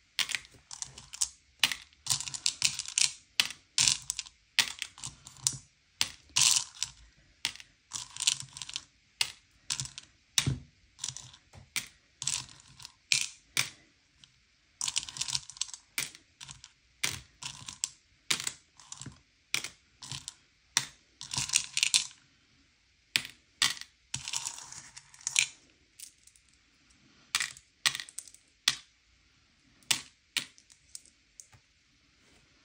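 M&M's candy-coated chocolates clicking and clattering as they are picked by hand out of a bowl and dropped into small plastic cups. Irregular clusters of sharp clicks, about one or two a second, with a couple of brief pauses.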